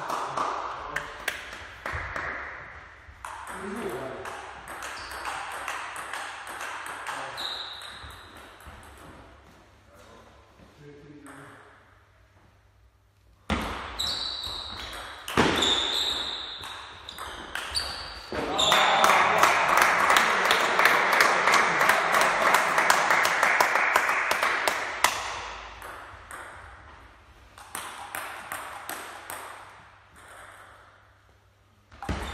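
Celluloid-type table tennis ball clicking off bats and the table in rallies, with short high squeaks from shoes on the wooden hall floor. About two-thirds through comes a louder stretch of dense, rapid clicks over noise, with voices.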